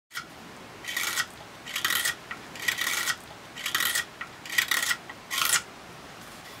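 Six even sharpening strokes, about one a second: a steel hook knife blade drawn along sticky-backed abrasive paper, each stroke a short rasp.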